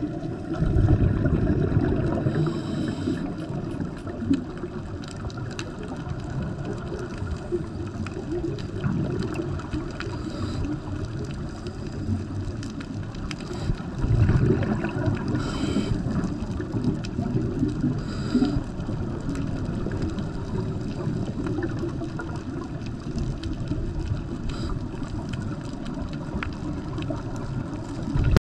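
Underwater ambient noise picked up by a diving camera: a steady low rumble with gurgling, bubbling water, swelling louder about a second in and again around fourteen seconds, with a few brief hissy flurries.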